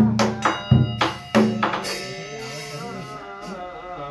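A temple drum and bell struck together three times, about two-thirds of a second apart, marking a break in the liturgy; the bell keeps ringing afterward. From about halfway through, a voice chanting the ritual text takes up again.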